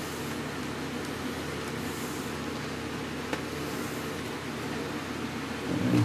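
Steady low mechanical hum made of several fixed tones, with one faint click about three seconds in.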